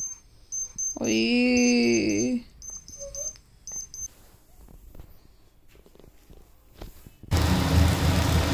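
A sick baby girl crying briefly, a single fretful wail about a second in, lasting just over a second, with faint high-pitched beeps around it. Near the end, loud sizzling and scraping starts abruptly as poha is stirred in a hot steel pan with a slotted spatula.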